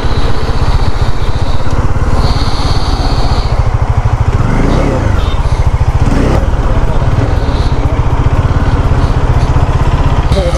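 Bajaj motorcycle engine running at low speed as the bike rolls slowly, with the revs rising and falling about halfway through.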